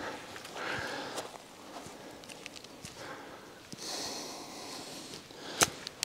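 Golf wedge striking the ball: one short, sharp click of clubface on ball near the end, after a few quiet seconds of the golfer setting up.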